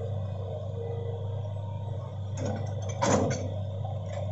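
Hitachi crawler excavator's diesel engine running steadily, with a short crash of brush and wood about two and a half seconds in and a louder one about three seconds in as the bucket pushes into felled trees.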